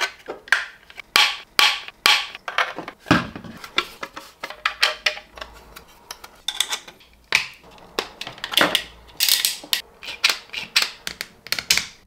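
3D-printed PLA plastic parts being handled and fitted together by hand, with irregular sharp clicks and knocks as the pieces and small hardware meet.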